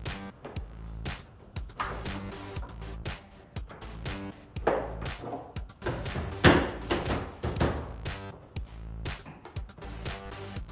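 Background music, with scattered plastic knocks and thumps as a car's front bumper cover is pushed and seated onto its side brackets and fender; the loudest knock comes about six and a half seconds in.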